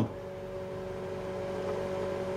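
A steady mechanical hum with a low rumble and two faint held tones, growing slightly louder.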